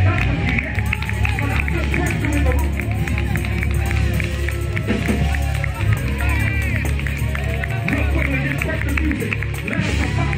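Church worship music with a steady heavy bass under a crowd of overlapping voices calling out, with scattered clapping.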